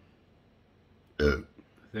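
A single short, deep burp a little over a second in.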